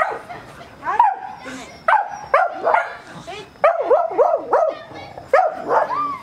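Small dog barking repeatedly: about a dozen short, high barks in quick bursts, with brief pauses between the bursts.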